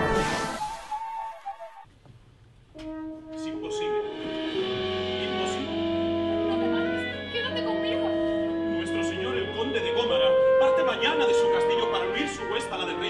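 The end of a short intro jingle, a brief near-silent gap, then a small live orchestra with strings begins an introduction of sustained chords under a slow melody. The introduction grows louder around ten seconds in.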